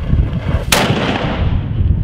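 A small wheeled cannon firing once about 0.7 s in: a single sharp blast followed by a rolling echo that fades over about a second.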